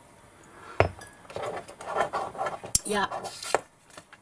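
Hard objects handled on a tabletop: a few sharp clinks and knocks, starting about a second in, with lighter rattling between them.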